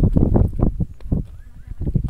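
Wind buffeting a phone's microphone in gusts, loudest in the first half second, with several short knocks from the phone being handled as it pans.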